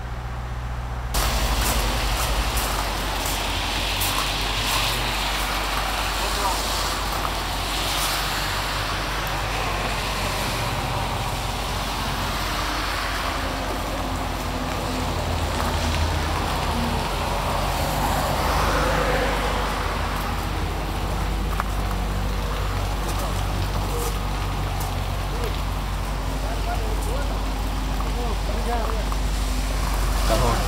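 Dodge Challenger R/T's 5.7-litre V8 idling steadily, a low even hum, under a continuous hiss with scattered light clicks from about a second in.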